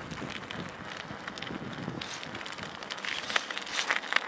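Bicycle rolling along a dirt-and-gravel track: a steady crunch of tyres with small crackles and rattles, and a few sharper clicks near the end.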